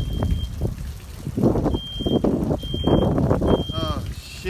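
A high electronic beep, one steady tone about half a second long, repeating roughly once a second, over loud rough rustling and rumbling noise bursts.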